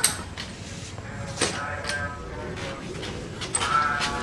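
A bicycle frame knocking and clicking as it is handled and clamped into a repair stand: a sharp click at the start, then two more about a second and a half in. A brief high-pitched animal call, like a bleat, sounds in the background near the end.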